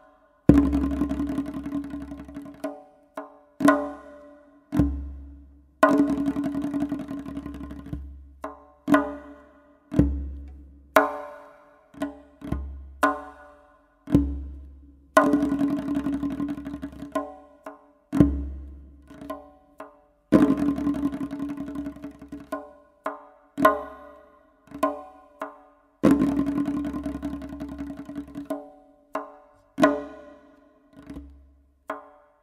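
Solo tonbak (Persian goblet drum) playing a free-flowing solo. Deep, booming bass strokes alternate with sharp, bright strokes at the rim, and there are stretches of rapid rolls, each phrase ringing out and fading before the next attack.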